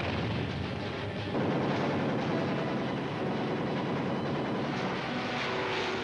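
Battle sound effects on an old film soundtrack: a dense, continuous din of explosions and gunfire, getting louder a little over a second in.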